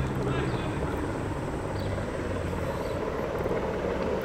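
Steady low rumble of a distant engine, with a faint hum that fades out early on.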